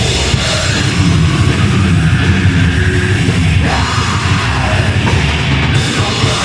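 Heavy metal band playing live and loud: electric guitar and bass guitar over a drum kit, in one dense continuous wall of sound.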